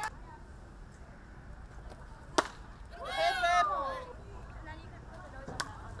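Sharp knock of a softball impact about two and a half seconds in, followed by a second of high, shouting voices from the players. A second, weaker crack comes near the end as the batter swings.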